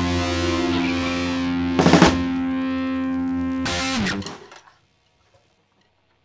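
Rock band's closing distorted electric guitar chord held and ringing, with a loud noisy hit about two seconds in and another just before four seconds. The chord then bends down in pitch and dies out, leaving near silence.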